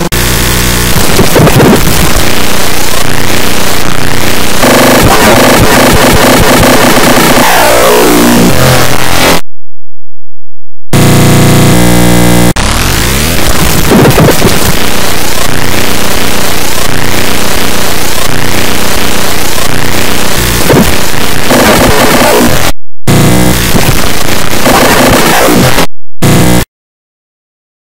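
Harsh, very loud, clipped cacophony of a cartoon soundtrack mangled by heavy distortion and pitch-shifting effects, with swooping pitch glides. It cuts to silence for about a second and a half nine seconds in, and briefly again near the end.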